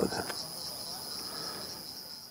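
Insects chirring in a steady, high-pitched drone that runs on without a break.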